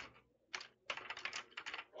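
Computer keyboard typing: a run of faint, quick key clicks starting about half a second in, as Korean text is typed into a slide.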